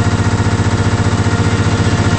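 A car engine running loudly with a rapid, even pulsing beat.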